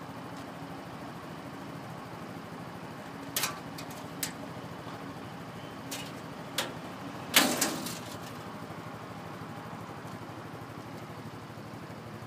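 Small ATV engine idling steadily while the steel tailgate of its rear cargo box is unlatched with a few clicks and swung down, the loudest sound a sharp metal knock about seven and a half seconds in.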